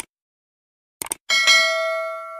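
Two short clicks, then a bell chime about a second in that rings on in several steady tones and fades slowly. It is the usual subscribe-button and notification-bell sound effect.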